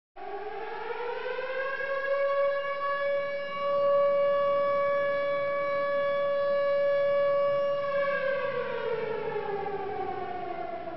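A siren winds up in pitch over about two seconds, holds one steady tone, then winds slowly down from about eight seconds in.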